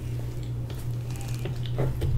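Soft wet mouth sounds of eating, chewing and sucking sauce from the fingers, over a steady low hum.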